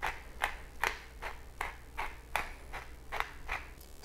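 Pepper mill being twisted to grind fresh black pepper. It makes short crunching strokes at an even pace, about two and a half a second.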